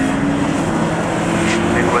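Engines of several road-going saloon race cars running together as the pack comes round a bend, their engine notes holding and easing slowly down in pitch.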